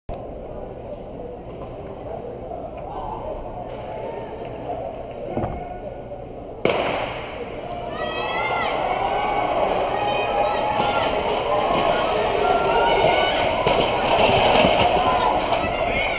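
A starting pistol fires once about six and a half seconds in, a sharp crack that echoes through the big hall. Afterwards the crowd's shouting and cheering builds steadily as the race runs.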